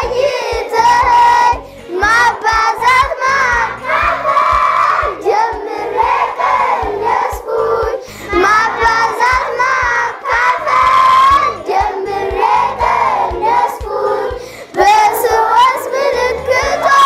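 A class of young children singing together, loud and continuous.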